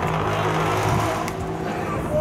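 A motor vehicle passing, its rushing noise swelling about a second in and easing off over a low steady hum.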